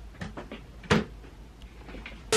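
A single sharp knock about a second in, among a few fainter clicks.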